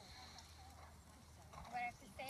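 Faint hoofbeats of a horse cantering on arena sand, with a voice calling out near the end.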